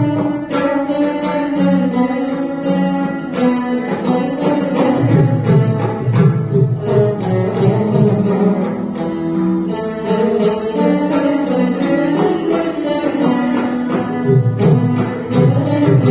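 Three Saraswati veenas playing together in a Carnatic piece: plucked notes with bending pitch glides. A mridangam plays with them.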